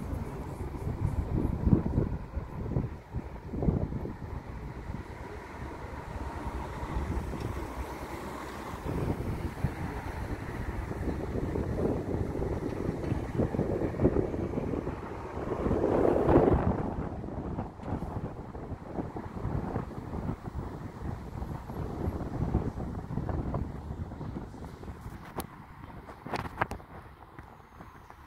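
Wind buffeting the microphone: an uneven low rumble that rises and falls in gusts, swelling loudest about sixteen seconds in.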